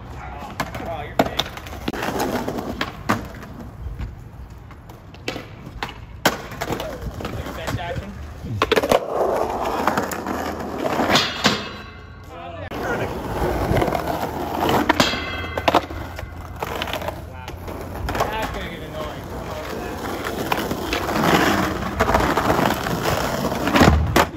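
Skateboard riding on concrete and asphalt: wheels rolling with a rough grinding hiss, broken by repeated sharp clacks and slaps of the board's tail popping, the deck landing and the board hitting the ground.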